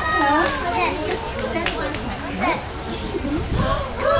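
Many young children's voices chattering and calling out at once, overlapping high voices with no single clear speaker.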